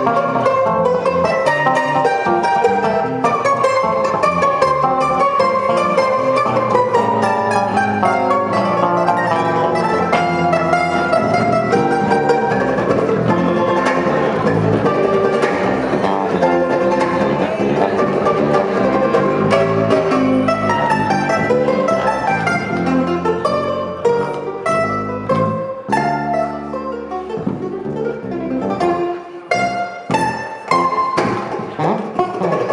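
Bandolim (Brazilian mandolin) and electric bass playing an instrumental duo, with a busy run of plucked notes over a bass line. In the last several seconds the playing turns to short, clipped notes broken by brief gaps.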